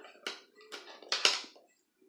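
Short handling noises as a pair of small metal scissors is picked up: three brief rustling taps, the loudest just after a second in.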